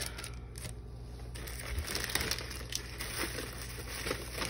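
Clear plastic sticker packaging crinkling and rustling in short, soft bursts as a bundle of paper stickers is handled and put back in its sleeve.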